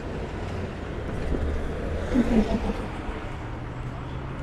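City bus and street traffic going by at an intersection: a steady low engine rumble that swells for a second or so in the middle.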